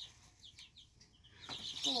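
Baby chicks peeping: short, high, falling peeps, a few at a time, growing busier near the end.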